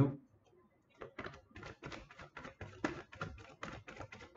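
A deck of tarot cards being shuffled by hand: a quick, soft run of card clicks and flicks, about five or six a second, starting about a second in.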